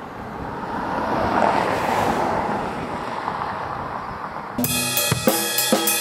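A car passing on a street, its noise swelling and then slowly fading. About four and a half seconds in, a drum kit takes over, with cymbals and drums struck in a steady beat.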